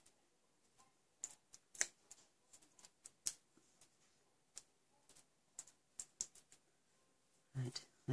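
Faint, irregular small clicks and taps from tweezers and small die-cut paper flowers being handled on a craft mat.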